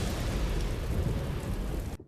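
Soundtrack of an animated recreation of Vesuvius's eruption over Pompeii: a continuous dense rumble and hiss, heard as a storm of falling ash and debris. It breaks off abruptly at the very end as playback jumps forward.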